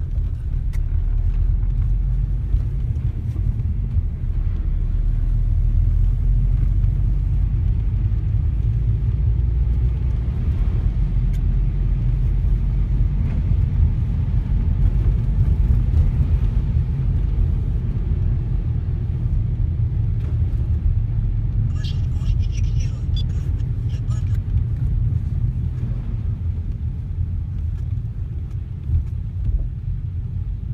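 Steady low rumble of a car driving, heard from inside the cabin, with the tyres running on a wet, slushy road. A short patch of crackle comes about two-thirds of the way through.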